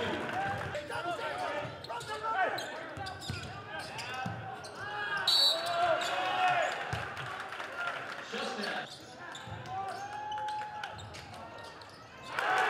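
Live basketball game sounds on a hardwood gym floor: the ball bouncing, sneakers squeaking and players shouting defensive calls such as "I have five". A short referee's whistle sounds about five seconds in.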